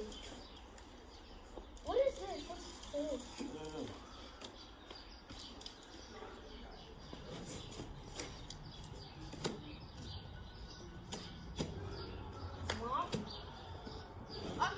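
Faint scrapes and a few short knocks of a large cardboard box being handled and opened, with brief voices about two seconds in and again near the end.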